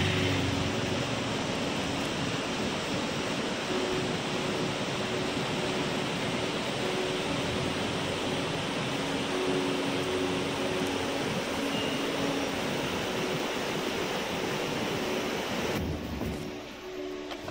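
Stream rushing in white-water cascades over rocks: a steady, even rush of falling water.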